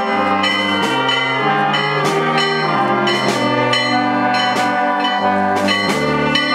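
Municipal brass band playing a processional march: held chords over a bass line that steps from note to note, with occasional percussion strikes.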